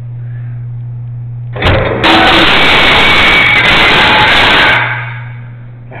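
A toilet flushing: a sudden loud rush of water that holds for about three seconds, then tapers away.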